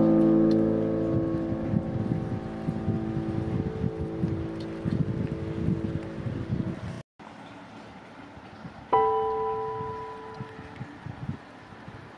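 Slow, sparse piano music: a chord rings out and slowly fades, and new notes sound about nine seconds in, with a low irregular rumble underneath. The sound cuts out for an instant about seven seconds in.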